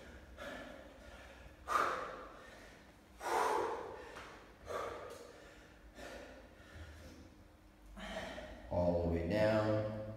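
A man breathing hard after 30 jumping burpees, with loud, gasping breaths about every second and a half. Near the end comes a longer voiced sound as he goes down into a one-leg pistol squat.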